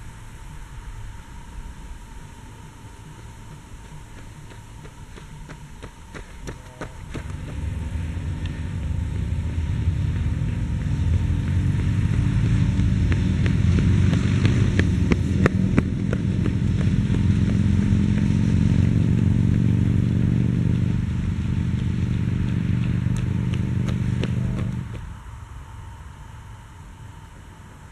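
A motor engine runs steadily and close by. It grows louder from about seven seconds in, holds loud, then cuts off abruptly near the end.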